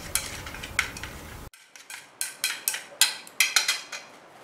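Wooden chopsticks stirring marinated meat strips in a stainless steel bowl, clicking against the metal; the clicks come sharp and quick, about three or four a second, in the second half.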